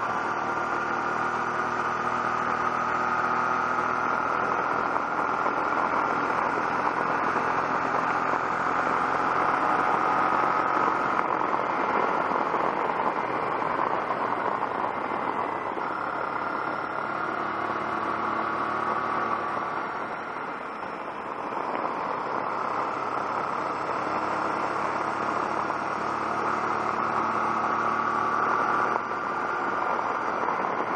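Honda NT700V motorcycle's V-twin engine running at road speed under a steady rush of wind and road noise. The engine note eases off briefly about two-thirds of the way through, then picks up again.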